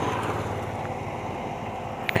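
Road vehicle noise: a steady rush with a faint low hum, slowly fading.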